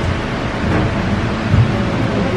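Steady hiss and low rumble of room noise picked up by a handheld microphone, with one low thump about one and a half seconds in as the microphone is raised.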